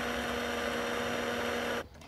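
Electric stick blender motor running steadily as it purées a thin pea and milk sauce in a pan, with a steady hum that cuts off suddenly near the end.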